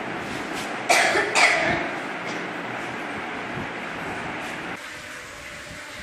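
Two short coughs about half a second apart, about a second in, over the steady murmur of a room full of people. The background drops suddenly near the end.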